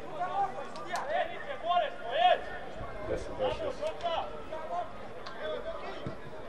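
Men's voices shouting and calling out at a distance, in short irregular bursts, with a few sharp clicks between them.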